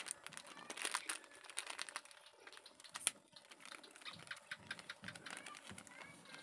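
Crinkling and crackling of a plastic instant-coffee sachet being handled and opened, a quick irregular run of small clicks.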